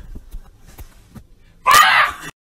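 A short, high-pitched scream from a woman's voice near the end, loud and sudden, after a second and a half of faint knocks and rustling.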